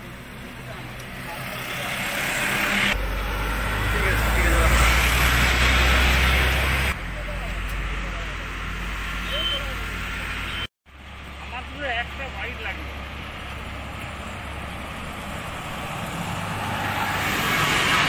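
Road traffic: vehicle engines and tyre noise of cars passing close by, swelling to its loudest a few seconds in, with faint voices among it. The sound cuts out for a moment about two-thirds of the way through, then the traffic noise resumes and grows again near the end.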